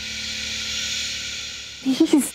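A steady hiss that fades a little over two seconds, ending in a short vocal sound right at the end.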